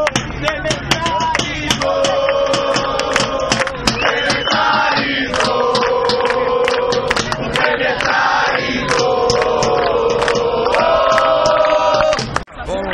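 A crowd of demonstrators chanting and singing in unison, long held notes changing in phrases every second or two, with sharp percussive hits throughout.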